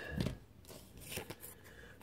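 Tarot cards being handled, giving a few faint papery clicks and slides.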